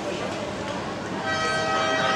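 Spectators' voices over the course, then, a little over a second in, a steady horn tone starts and holds. It is the finish signal as the racing kayaks cross the line.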